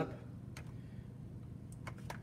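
A few faint plastic clicks from a hand on a Ninja blender's lid and handle, over a low steady hum.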